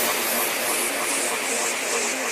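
Electronic psytrance music with the bass cut out: a hissing synth noise pulsing about twice a second over short, quiet synth notes, a breakdown in the track.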